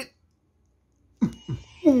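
Silence for about a second, then a man laughing in short falling bursts.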